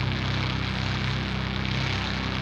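A steady low droning hum with a wash of static hiss over it, part of the recording's ambient ending, with no singing.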